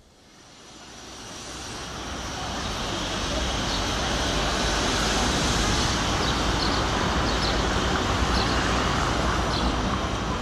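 Street ambience with steady road traffic noise, fading in over the first few seconds and then holding steady.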